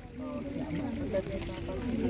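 Faint background voices of people talking, quieter than the nearby speech, over a low rumble.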